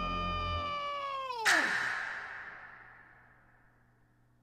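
A man's long, high-pitched yell of "No!", held steady and then falling sharply in pitch about a second and a half in. A sudden loud, noisy hit cuts in just then and fades away over the next second and a half. A low music drone under the yell stops about half a second in.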